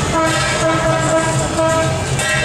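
Loud procession music: a reedy wind instrument playing long held notes that change pitch every half second or so, over a steady low beat.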